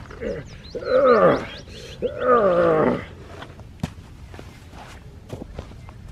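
A man's two strained groans of effort, each falling in pitch, as he heaves at a heavy concrete slab. A few light knocks and scrapes of stone follow.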